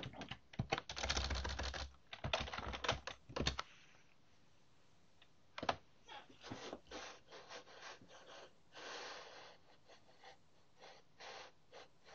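Typing on a computer keyboard: a quick run of keystrokes for about the first three and a half seconds, then a few scattered, quieter key presses with pauses between them.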